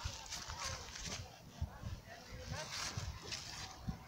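A horse breathing and blowing through its nostrils right at the microphone: two noisy breaths of about a second each, with a few low thumps.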